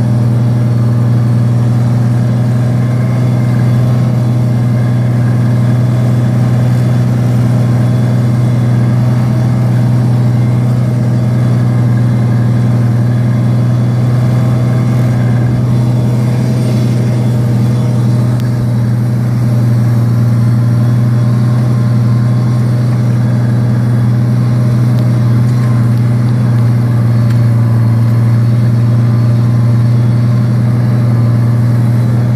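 International tractor engine running at a steady, even drone under load while pulling a chisel plow with 16-inch sweeps through sod, heard close up from the tractor.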